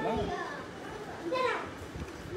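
Speech only: a woman's voice in short, quiet utterances, once near the start and again about one and a half seconds in.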